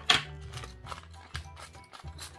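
Clear plastic bag of tiny LEGO pieces being handled: a sharp click just after the start, then soft crinkling and small clicks. Quiet background music runs underneath.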